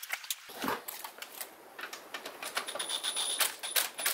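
Irregular metallic clicks and taps of a wrench working the threaded fuel-line fitting at the fuel pump of a VW 2.0 TSI engine.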